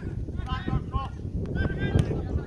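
Short, high-pitched shouts from footballers calling out during play, three or four calls in quick succession, over a low rumble of wind on the microphone.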